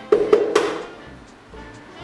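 An egg tapped sharply against the rim of a bowl three times in quick succession to crack its shell, over background music.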